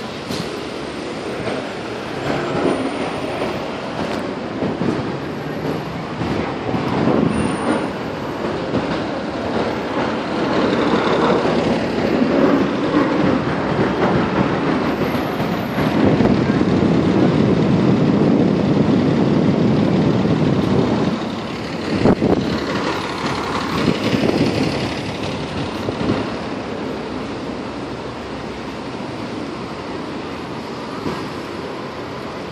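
Steady city street rumble of passing traffic, swelling loudest for several seconds past the middle, with a sharp knock just after it.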